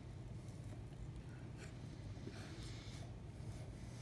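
Quiet room tone with a steady low hum, and a few faint soft noises from a slider hamburger being chewed and handled.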